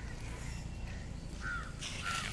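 A bird gives two short calls, about a second and a half in and again at the very end, over steady low outdoor background noise.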